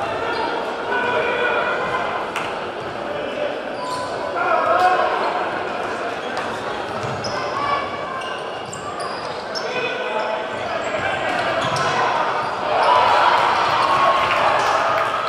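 Basketball being dribbled on a hardwood gym floor, with short high sneaker squeaks, over crowd chatter echoing in a large hall. The crowd noise swells near the end.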